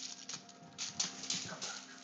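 A crinkly crunchy ball crackling in several short bursts as a Sphynx kitten bats it with its paws.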